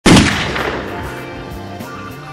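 A hip-hop instrumental beat opening with a loud bang that dies away over about half a second, then carrying on with low bass and light drum hits.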